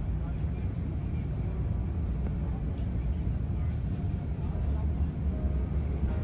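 Boeing 787-8 jet engines running at takeoff power, heard from a window seat inside the cabin: a loud, steady, deep roar with runway rumble as the airliner accelerates down the runway.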